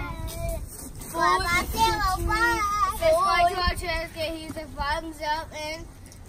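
Young children's high voices calling out in a sing-song way, a string of wavering calls starting about a second in.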